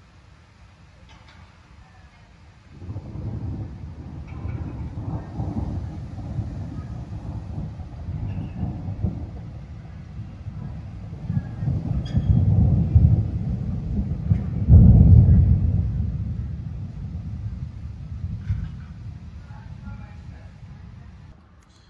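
Long roll of thunder from a thunderstorm: a deep rumble that begins about three seconds in, swells to its loudest past the middle, then slowly dies away.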